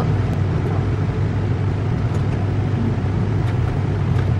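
Motorhome driving at low speed, heard from inside the cab: a steady low engine hum and road noise, with a few faint rattles.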